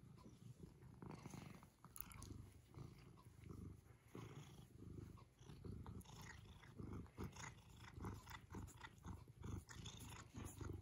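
A silver tabby cat purring faintly while it is stroked, a low rumble that swells and fades with each breath. Soft clicks join in during the second half.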